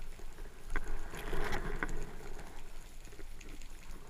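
Underwater sound picked up through a camera housing while diving: a low steady hiss with scattered sharp clicks, and a brief swishing rush of movement between one and two seconds in.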